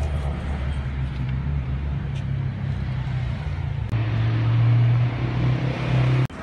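Steady low rumble of a motor vehicle running, which shifts to a higher, louder hum about four seconds in.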